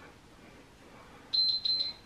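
Workout interval timer sounding three quick high-pitched beeps a little past halfway, signalling the end of a timed work interval.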